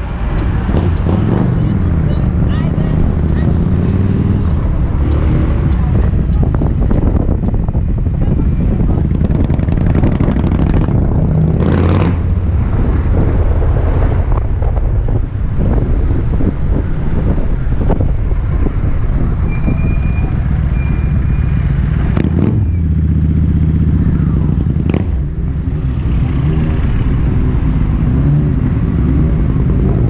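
Kymco Xciting 250 maxi-scooter's single-cylinder engine running while riding in city traffic, its pitch rising and falling with the throttle. A few sharp knocks come through about 12, 22 and 25 seconds in.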